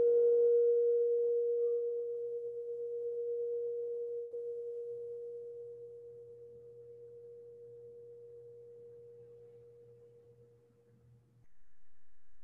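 Singing bowl ringing out: a single steady tone that slowly dies away over about eleven seconds, its higher overtones fading first. A brief low noise follows near the end.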